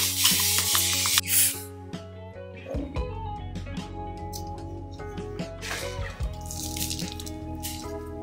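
A handheld trigger spray bottle misting in a burst of several quick squirts in the first two seconds, over background music; two fainter hisses follow later.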